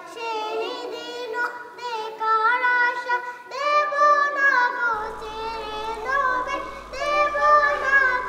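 Several young girls singing a Bangla gojol (Islamic devotional song) together, unaccompanied, in long held and gliding melodic phrases.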